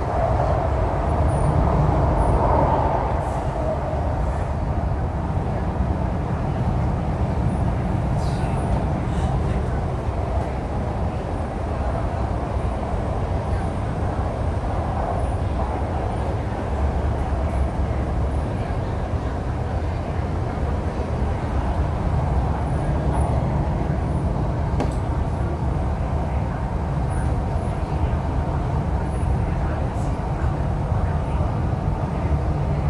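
Inside a Hyundai Rotem R-Train electric multiple unit running at speed: steady low rumble of the wheels on the rails and the running gear, with a higher hum that stands out in the first few seconds.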